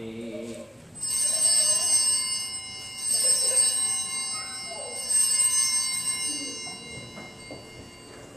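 Altar bells rung three times, about two seconds apart. Each ring is a cluster of high, steady bell tones that dies away.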